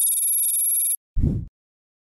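Logo-animation sound effect: a steady, high-pitched electronic tone held for about a second that cuts off suddenly, followed by a short low thud.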